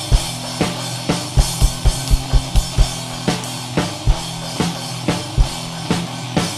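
Rock band playing an instrumental passage live: drum kit with kick drum and snare hits driving a steady beat, over sustained distorted electric guitar and bass notes. A quick run of kick-drum beats comes about halfway through.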